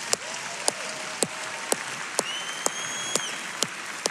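A large audience applauding, with scattered sharp claps standing out close by. Someone in the crowd gives a long, high whistle a little after two seconds in.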